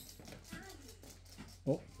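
Quiet room tone with a faint, short pitched sound about half a second in, then a spoken "oh" near the end.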